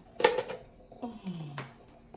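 Two short vocal exclamations, the second an "oh" falling in pitch about a second in, with a faint click near the start.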